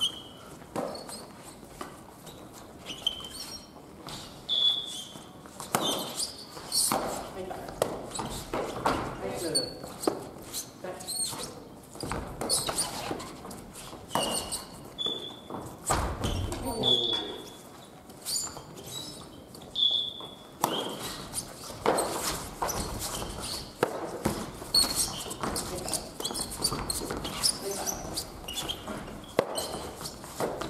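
Badminton rally: rackets hitting a shuttlecock in repeated sharp strikes, with sports shoes squeaking in short high chirps on the wooden gym floor as players lunge, and voices calling out.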